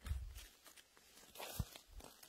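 Faint rustling of moss and twigs with soft thuds as chanterelles are picked by a gloved hand from the forest floor: a low thud at the start, and a brief rustle ending in a sharper thud about a second and a half in.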